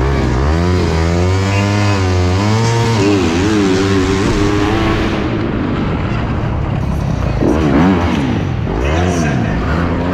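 Alta Redshift electric dirt bike's motor whining at race speed, its pitch rising and falling again and again with the throttle. A low steady hum runs beneath it.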